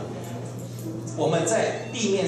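A man speaking into a handheld microphone over a PA system, with a steady low hum underneath.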